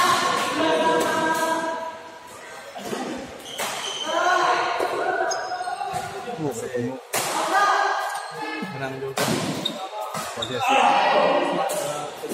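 Badminton doubles rally: sharp racket strikes on the shuttlecock and footfalls on the court, with players' voices and a shout of "yes" near the end as the rally finishes.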